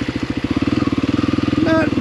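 Dirt bike engine running at low revs with an even, rapid beat. It picks up slightly about half a second in as the bike rolls into a shallow muddy water crossing.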